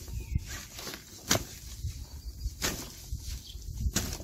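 Faint rustling of a fabric grow bag being handled, with two short soft taps about a second and a half apart.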